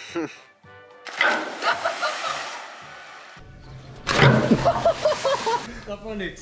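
Background music and shouting voices, with a splash as a jumper drops from a rope swing into the canal.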